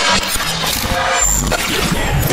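Loud sound-effect sting under an animated news-channel logo: dense rushing noise, with a deep rumble coming in a little past halfway.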